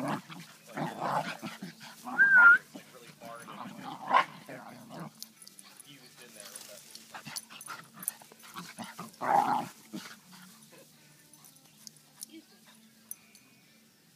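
Two dogs at rough play: irregular bursts of dog vocalizing in the first few seconds and again around nine seconds, with a short, clear, wavering whistle about two seconds in. A person's voice is heard too.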